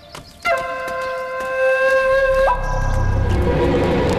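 Soundtrack music: a long, steady wind-instrument note enters suddenly about half a second in and shifts pitch about two and a half seconds in. A deep low rumble swells up beneath it in the second half.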